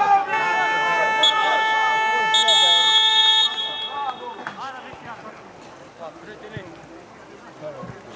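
A horn sounded in one long steady blast of about four seconds, with a higher, brighter note layered in for about a second partway through, over shouting football spectators.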